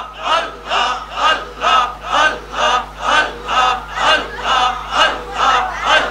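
Group zikr: many voices chanting a short, forceful syllable in unison, about two a second, in a steady driving rhythm.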